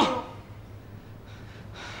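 A man draws an audible breath in, about one and a half seconds in, just before he speaks, over a faint steady room hum. The last syllable of a spoken word ends right at the start.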